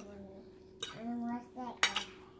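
Metal fork clinking against a dinner plate a few times, the sharpest clinks near the end.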